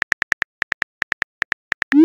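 Simulated phone-keyboard typing clicks, about seven a second, as a text message is typed. Near the end comes a short rising swoosh, the message-sent sound.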